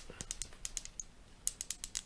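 Metal finger rings clicking and clinking in a rapid, irregular patter, with a short pause just past the middle before the clicks resume.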